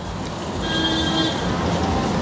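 Street traffic noise that swells slightly, with a brief steady tone lasting under a second about half a second in.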